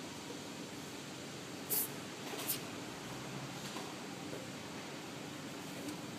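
Pencil tire gauge pressed onto a tire's valve stem, giving two short, high hisses of escaping air about two seconds in, over a steady background hiss.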